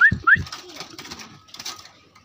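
Caged straw-headed bulbul (cucak rowo) giving two short rising whistles in the first half second, each with a low thump as the bird moves about in its cage. A brief rustle follows near the end.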